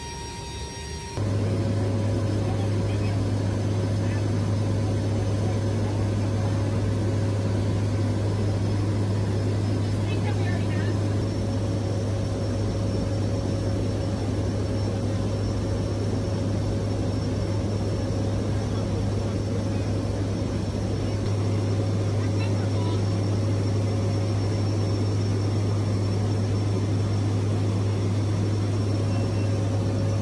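Steady drone of a C-130J Super Hercules's turboprop engines and propellers heard inside the cargo hold in flight: a loud, even low hum with faint steady whines above it. It starts suddenly about a second in.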